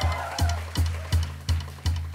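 Jazz drum kit playing in a live trio: a steady low pulse, about three beats a second, each beat with a sharp high click.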